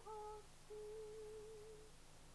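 Faint background music: a soft, slow melody of single held notes, ending on one long, slightly wavering note.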